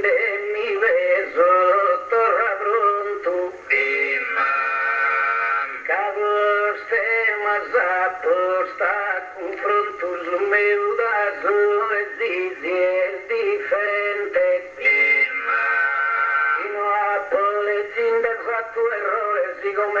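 A man's solo singing voice: an improvising poet chanting his verse in the slow, ornamented melody of the Sardinian gara poetica, with winding turns and two long held notes.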